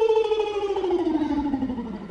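A man's voice holding one long note that slides slowly and steadily down in pitch.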